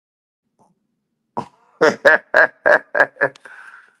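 A man laughing: one sharp burst about a second and a half in, then a quick run of about six short pulses, trailing off into a faint breath.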